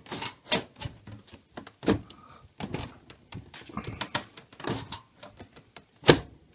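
Plastic inner cover panel of a frost-free freezer being pushed onto its guide legs and tracks: a string of irregular plastic clicks, taps and knocks.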